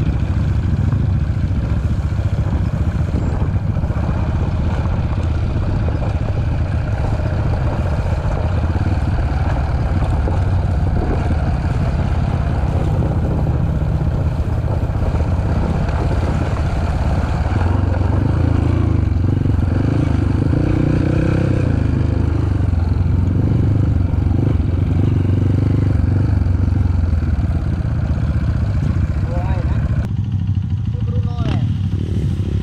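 Dirt bike engine running steadily, loud and low-pitched.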